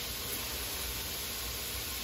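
Bacon frying in a pan, a steady sizzling hiss.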